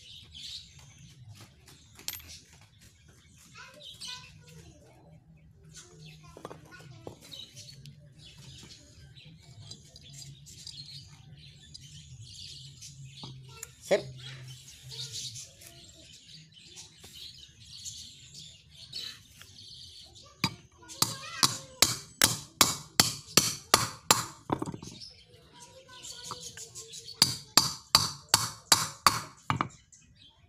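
Claw hammer striking the steel pump lever of an air rifle laid on a wooden board, in two runs of steady, even blows about three a second: a longer run of roughly a dozen strikes, then a shorter one after a short pause.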